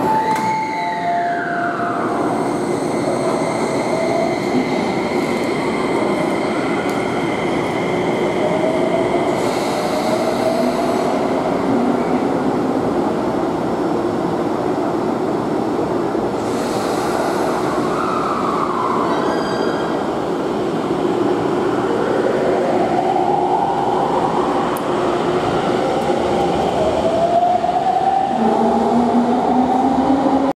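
Keio 5000 series electric train pulling out of an underground station, its motors whining in tones that rise in pitch as it accelerates, over the steady running noise of wheels on rail.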